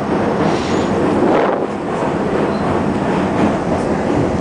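R-68 subway train running on the tracks across a steel bridge, heard from inside the front car: steady, loud noise of wheels on rail and the moving car.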